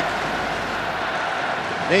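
Large arena crowd cheering and clapping, a steady, even wash of noise.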